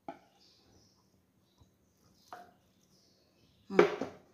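Mostly quiet, with a few faint, brief knocks of a ceramic plate being handled and set on a table, and a short spoken "ừ" near the end.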